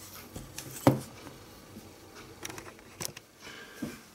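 Faint handling noise: a few light clicks and taps as the small plastic-and-metal chassis of an N scale model locomotive is held and turned in the fingers, over a quiet room hiss.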